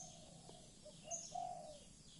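Faint bird calls outdoors: a dove cooing in a few short low notes, with brief high chirps from a small bird.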